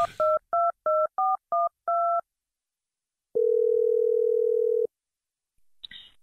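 Telephone keypad touch-tones as a number is dialled, about eight quick beeps in two seconds. After a short pause comes a single long ringback tone as the call goes through.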